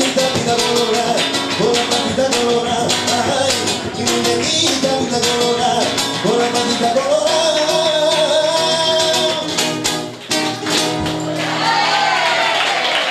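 A man singing a flamenco-style song to his own strummed nylon-string Spanish guitar, with a long held note about seven to nine seconds in. The music drops away shortly before the end.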